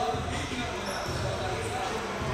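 A basketball being dribbled on a hardwood gym floor, bouncing a few times, with voices in the background.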